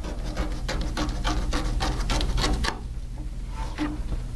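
A sheet of printmaking paper being torn down against the edge of a steel ruler: a rapid run of short ripping crackles lasting about two and a half seconds, then a few scattered ones as the strip comes free.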